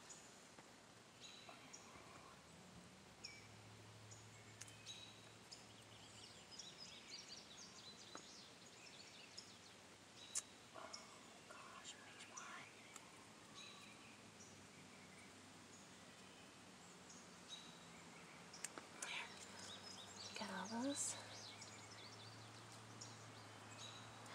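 Near silence: faint outdoor background with scattered soft clicks and rustles as seedlings are snipped and handled in the soil of a raised bed. A faint low hum comes in twice.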